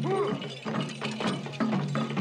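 Field recording of a Dogon masked dance: fast clattering percussion strokes over a steady low hum, with rising-and-falling cries, the loudest just after the start.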